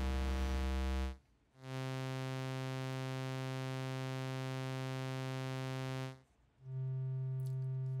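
Behringer Cat analog synthesizer oscillator holding a steady low drone while its waveform is switched: a square wave, then a brighter, buzzier sawtooth, then a softer triangle. The tone cuts out briefly twice, for about half a second each time, as the waveform changes.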